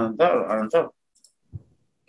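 A man speaking for about the first second, then a pause broken by a couple of faint, short clicks.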